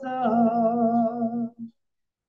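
A man singing one long held note with a slight waver, with no instrument audible. The note stops about one and a half seconds in.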